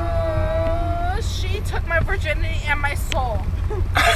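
A voice holds a long sung note that breaks off about a second in, followed by quick vocal phrases. Under it runs the steady low rumble of a car on the move.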